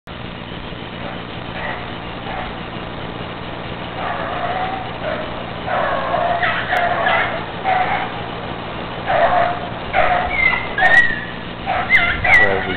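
A hound baying while running a track. Short repeated calls start about four seconds in and come faster and louder toward the end, over a steady low hum.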